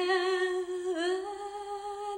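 A woman's voice humming a wordless melody: long held notes with a slight vibrato, scooping up into the first and dipping then rising to a slightly higher note about a second in.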